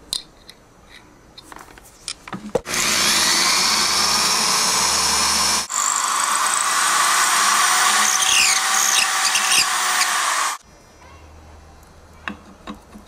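Cordless drill with a twist bit boring a small hole through a piece of wood: two steady runs, about three seconds and then about five seconds, with a brief break between them. A few small handling clicks come before it.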